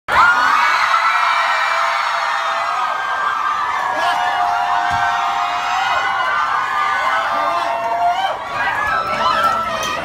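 A crowd cheering and screaming, many high voices at once. It settles into scattered chatter and calls near the end.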